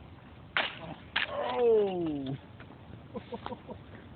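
Two sharp knocks about half a second apart as the Traxxas Stampede RC monster truck comes down and tumbles on the pavement after its jump, followed by a person's drawn-out "ohh" that falls in pitch.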